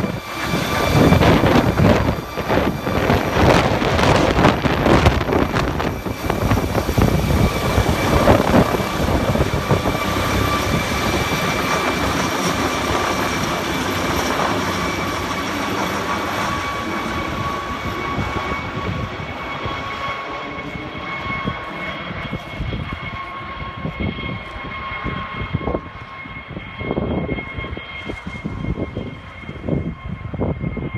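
Air ambulance helicopter taking off and climbing away overhead: loud rotor noise with a steady high turbine whine, gradually fading as it departs.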